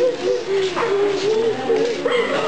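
Several voices chanting a slow prayer, holding long notes that waver in pitch.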